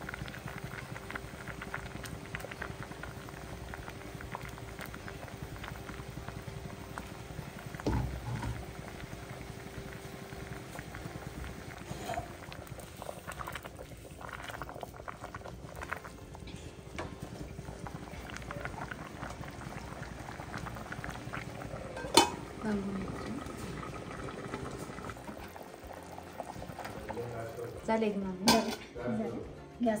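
A pot of thick curry bubbling steadily at a simmer on a gas stove. There are scattered small clicks, and one sharp knock about two-thirds of the way in as the pot is handled.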